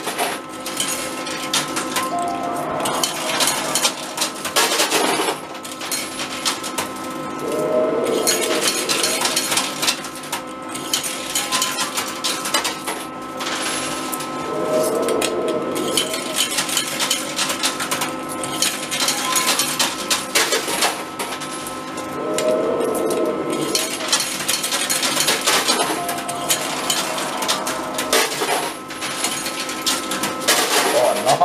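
Metal arcade coins clinking and clattering in a coin pusher machine, as scattered clicks and knocks over the machine's steady hum and tones. A short burst of a lower sound recurs about every seven seconds.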